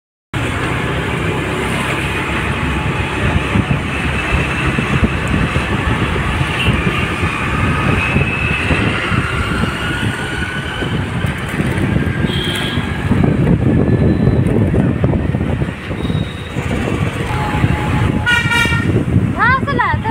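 Road traffic heard while riding along a busy city street: a steady low rumble of engines and rushing air, with vehicle horns tooting now and then, including a short toot about twelve seconds in and another near the end.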